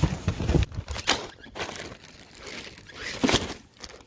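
Clear plastic packaging crinkling and rustling in irregular bursts as a packaged dog harness is handled.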